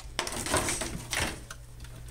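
Hard plastic being handled: a quick run of clicks and rustles as the plastic Darth Vader alarm clock and its clear packaging are moved, thinning out after about a second.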